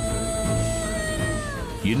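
Background music score: a single long held high note over a low music bed, sliding downward near the end.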